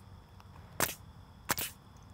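Pneumatic nail gun firing twice, about two-thirds of a second apart, each shot a sharp crack as it drives a nail through a wood picket into the backer rail.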